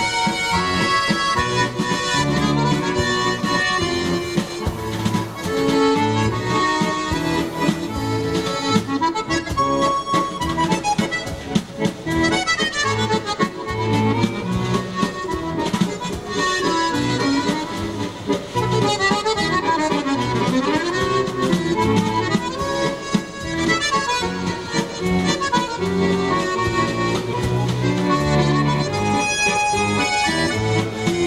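Chromatic button accordion playing a valse musette: a waltz melody over regular bass notes, with quick runs up and down the keyboard in the middle.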